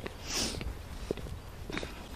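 Footsteps on a paved stone path, faint regular ticks about every half second, with a short breathy hiss about half a second in.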